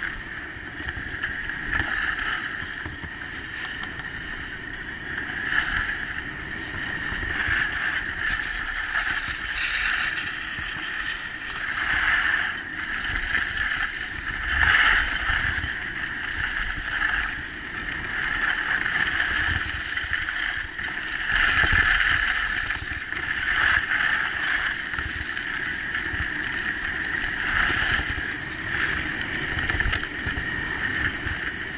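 Skis hissing and scraping over packed snow, swelling and fading with each turn, over a low wind rumble on the microphone.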